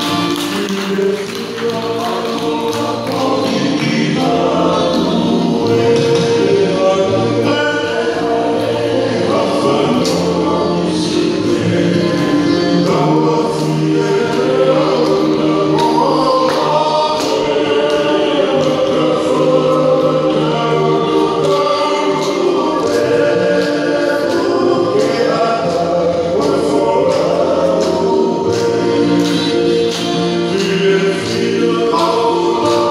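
Music: a group of voices singing a Tongan song in harmony over a steady beat.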